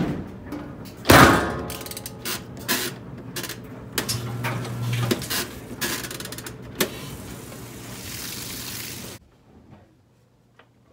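Top-loading washing machine being set going: a loud knock about a second in as the lid is shut, then a run of clicks and knocks as the cycle dial is turned. A steady hiss follows near the end and cuts off suddenly.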